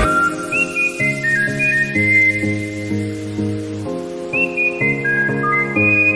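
Instrumental background music: a whistled melody, sliding up into its phrases, over held chords that change about once a second, with no drums.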